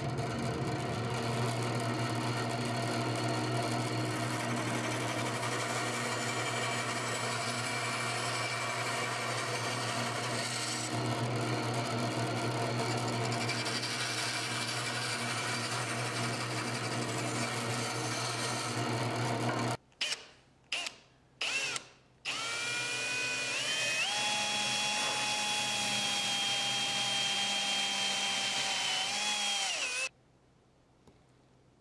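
Bandsaw running with a steady hum while a 45-degree notch is cut into a small lacewood whistle blank; the saw stops about two-thirds of the way through. Then a cordless drill is triggered in a few short bursts and runs with a steady whine for about seven seconds, drilling a small hole in the blank.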